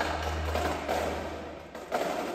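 Indoor percussion ensemble performing: a low sustained tone fades out, then a single sharp percussive hit lands just before the end.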